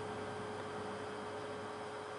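A steady electrical hum: one constant mid-pitched tone over a faint even hiss.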